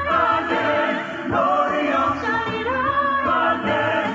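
Small mixed vocal group singing a Christmas song in harmony, a woman's voice leading at the microphone, the held notes gliding and wavering.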